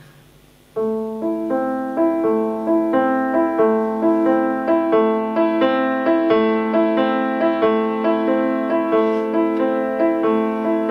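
Grand piano played live, coming in about a second in with a steady, flowing figure of notes, about three a second, over held lower notes.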